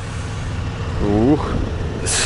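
Steady low rumble of an idling vehicle engine, with a man's short "ukh" exclamation about a second in.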